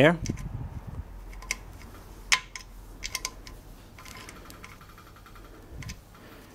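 Small metal clicks and taps as a ratchet is fitted to the lock nut on the fuel pump quadrant of a Lister LD1 diesel engine, then a quick run of ratchet clicking from about four seconds in as the lock nut is tightened.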